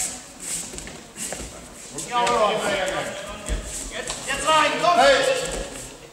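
Raised voices calling out loudly twice, about two seconds in and again about four and a half seconds in, echoing in a large sports hall.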